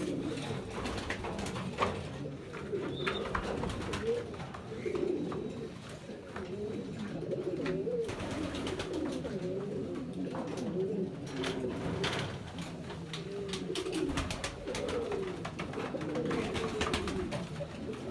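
Domestic pigeons cooing, low wavering coos repeated again and again without a break, from a male puffed up in display.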